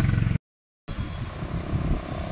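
A vehicle engine running with a steady low hum that cuts off abruptly under half a second in. After a brief silence comes an uneven low rumble of traffic on the road.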